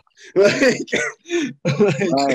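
A man laughing loudly in about three bursts.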